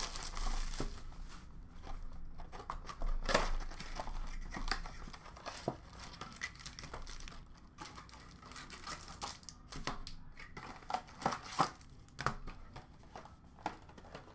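Plastic wrapping and foil card packs crinkling and rustling as hands unwrap and open a hockey card box and pull out the packs, with irregular sharp clicks and taps.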